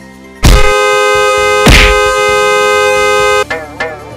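A car horn sound effect held down in one long, loud, steady blast of about three seconds. It starts with a sharp hit, has a second hit partway through, and cuts off suddenly near the end, followed by light warbling music.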